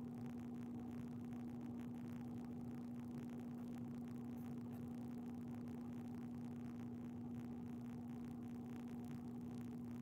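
Steady low hum with a faint hiss underneath, unchanging throughout: room tone with no speech.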